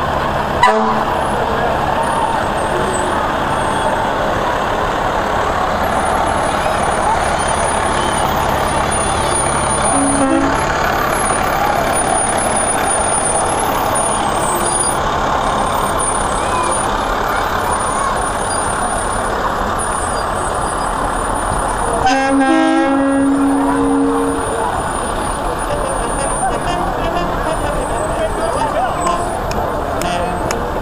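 Fire trucks in a parade rolling slowly past with engines running, over steady crowd chatter. A short horn toot sounds about ten seconds in, and a longer horn blast of about two seconds comes a little past the twenty-second mark.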